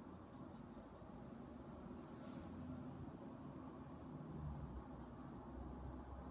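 Faint scratching of a pencil drawing short strokes on sketchbook paper, over a low room hum.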